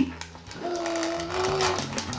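A girl's long, drawn-out "umm", held on one steady pitch for about a second, over background music.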